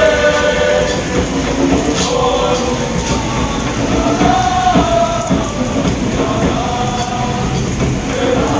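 A Cook Islands dance group chanting in unison on long held notes that shift in pitch, with steady rain underneath.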